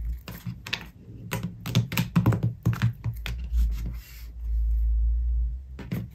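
A deck of tarot cards being shuffled, cut and split into piles on a tabletop: a quick run of card snaps and taps for the first three seconds or so. Near the end comes a low rumble lasting a second or more.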